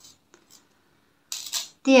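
Faint small metallic clicks and a brief rustle of a thin metal jewellery chain and jump ring handled between the fingers, the rustle about a second and a half in.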